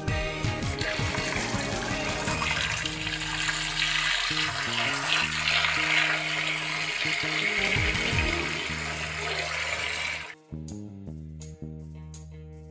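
Tap water running and splashing into a stainless steel bowl of pumpkin chunks as they are rinsed by hand, over background music with a steady bass line. The water cuts off suddenly about ten seconds in, leaving only the music.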